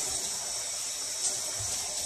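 Shower running behind a closed curtain, a steady hiss of water spray.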